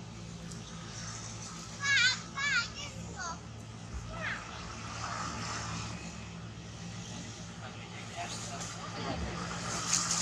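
A long-tailed macaque gives two short, wavering, high-pitched squeals about two seconds in, then fainter squeaks, over a steady low hum.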